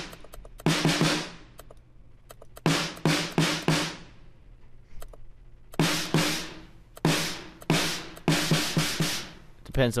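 Programmed drum pattern from the Addictive Drums software kit playing in three short runs of hits, the snare fed through the plugin's distortion insert. The distortion is set to Crunch at first and to Heavy in the last run; playback stops briefly between runs.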